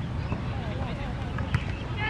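Footballers' distant shouts and calls across an outdoor pitch over a steady low rumble, with one sharp knock of the ball being struck about one and a half seconds in.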